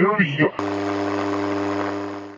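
Radio receiver output: a short garbled voice-like fragment, which the session takes for a spirit voice saying 'sono io', then from about half a second in a steady buzzing hum with hiss.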